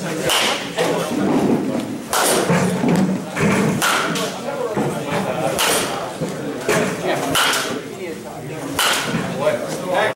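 Baseball bat hitting balls into a batting cage net: about five sharp cracks, spaced a second and a half to two seconds apart.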